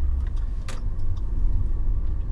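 Steady low rumble of road and engine noise inside a moving car's cabin, with one short click a little under a second in.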